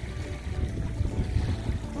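Wind buffeting a phone's microphone outdoors: an uneven low rumble.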